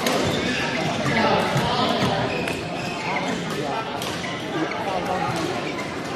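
Badminton rackets striking a shuttlecock in a rally: a series of sharp hits, over background chatter of voices echoing in a large indoor sports hall.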